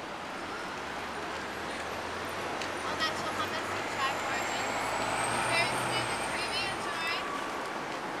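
Street traffic with a heavy vehicle running in a low steady rumble that fades out near the end. A thin high whine sounds for a few seconds in the middle, and passers-by talk.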